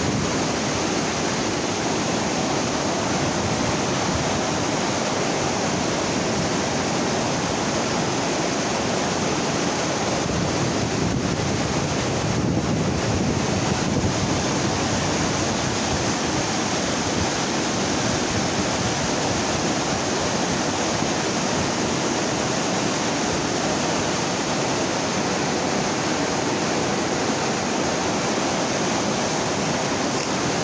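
Huron River water rushing and churning through white water below a dam: a steady, unbroken rush, with wind on the microphone.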